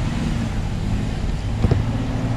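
A vehicle engine running nearby with a steady low hum. There is a short knock near the end.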